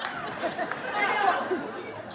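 Several people talking at once: overlapping chatter of many voices, none of them clear.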